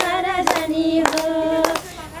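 A group of women singing a Nepali Teej folk song, keeping time with hand claps, a clap roughly every half second. A long held note runs through the middle of the line before the voices drop off near the end.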